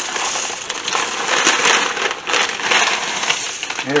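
Dry wide egg noodles pouring out of a plastic bag into a slow cooker, a continuous rattle of the stiff noodles landing on one another, with a few louder surges as the bag is tipped and shaken.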